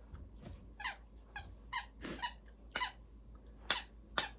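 Squeaker in a plush sloth chew toy squeaking as a dog chews it: about seven short, high squeaks at uneven intervals.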